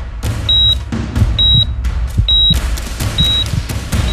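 A single high electronic beep repeating about once a second, typical of a patient monitor's pulse tone, over background music with a steady drum beat and bass.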